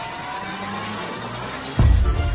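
Intro music sound design: an electronic riser sweeping steadily upward in pitch, cut off by a heavy bass impact near the end.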